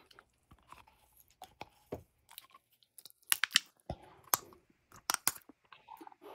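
Chewing a raw beeswax crayon close to the microphone: irregular crunches and small clicks, quiet at first, growing louder and more frequent from about three seconds in.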